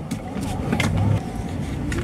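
Car cabin noise while driving: a steady low engine and road rumble inside the moving car, with a few faint clicks.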